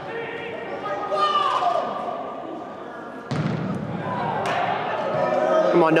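Soccer ball kicked during play in a large indoor hall, with two sharp thumps about three and four and a half seconds in, over a hubbub of voices calling out.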